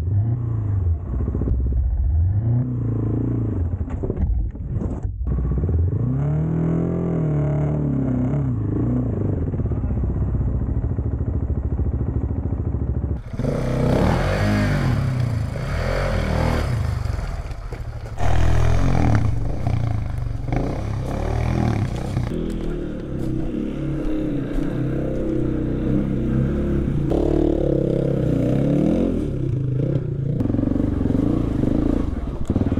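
Dual-sport motorcycle engines revving up and down in repeated bursts of throttle while climbing a steep rocky trail, with loose rock clattering and scraping under the tyres. The sound changes abruptly about halfway through, turning noisier and busier.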